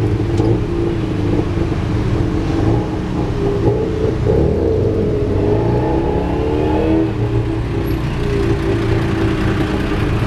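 Tuk-tuk's small engine running loudly beneath the open passenger cabin, its pitch rising and falling as it speeds up and eases off in traffic between about four and seven seconds in. Road and traffic noise runs under it.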